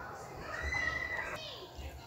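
Faint voices of children in the background, with two dull low knocks as a glass jar is set down in a slow cooker's pot.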